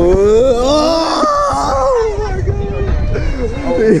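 A long drawn-out "whoa" yell from riders on a swinging amusement ride, rising and falling in pitch for about three seconds, over rumbling wind noise on the on-board microphone; a laugh breaks out at the very end.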